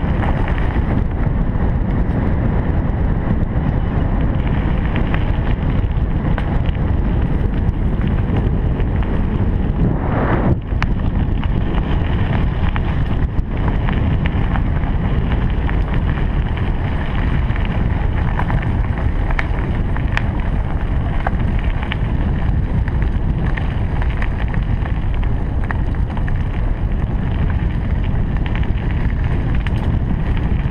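Steady wind buffeting on a moving action camera's microphone during a mountain-bike ride, mixed with the rolling noise of the bike's tyres on gravel and dirt trail. A couple of brief sharper rustles or knocks break through, around ten and thirteen seconds in.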